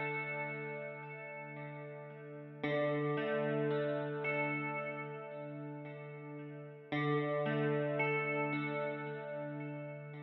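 Slow instrumental background music: sustained chords struck about every four seconds, each fading away before the next.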